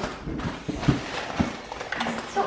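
Cardboard Priority Mail shipping box being handled and rummaged through: a few irregular knocks and rustles as its flaps and contents are moved.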